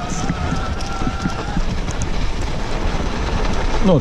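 Electric mountain bike riding over firm, packed snow: a steady rumble and crunch of the tyres with wind on the microphone, and a faint whine from the pedal-assist motor during the first second and a half.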